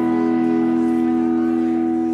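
A live rock band holding its final chord on guitars, bass and keys: one steady chord that rings on unchanged, with no drum hits.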